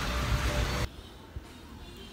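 Air bike's fan whooshing as it is pedalled, cut off abruptly a little under a second in. After that a much quieter room with faint music.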